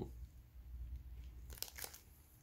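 Biting into and chewing a hazelnut-studded chocolate wafer bar held in its crinkly wrapper: faint crunching and wrapper crinkling, with a few short sharp crackles near the end.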